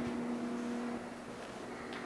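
A steady low electrical-sounding hum over faint room noise, dropping in level about a second in.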